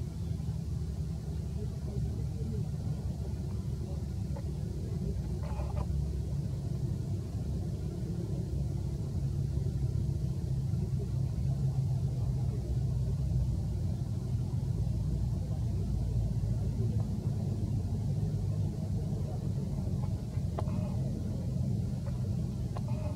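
A steady low rumble, with a few faint, brief sounds over it about six seconds in and near the end.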